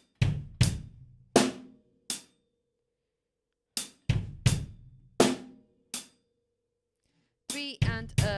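Drum kit played slowly: two short phrases of a few strokes each, mixing a loose, trashy hi-hat with bass drum and snare, with a pause between them. This is the hi-hat, bass and snare pattern of beats three and four of a slow rock groove.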